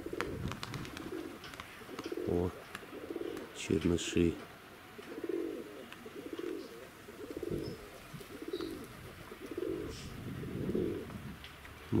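Domestic pigeons cooing close by: a string of low, throaty coos, one after another about every second.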